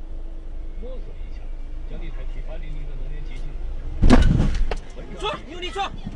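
Steady low rumble of a car on the road, with a sudden loud bang about four seconds in that dies away within a second, followed by voices.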